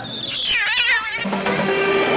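An animal's high, wavering scream that slides downward for about a second, then music with a sustained low note comes in.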